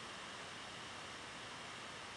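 Faint steady hiss of room tone and microphone noise, with no distinct events.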